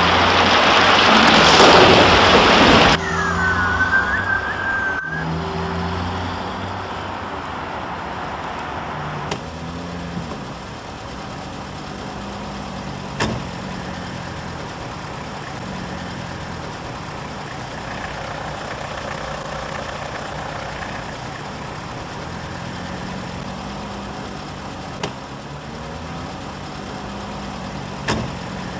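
A car: a loud rush of noise for the first three seconds, a brief high squeal just after, then the engine running steadily for the rest, broken by a few sharp clicks.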